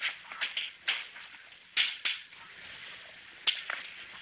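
Irregular sharp clicks and knocks of hard objects being handled out of sight behind a store counter. They come in small clusters, the loudest pair about two seconds in.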